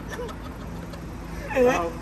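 Steady low hum of road traffic, then a man's loud shout of "hey" about a second and a half in.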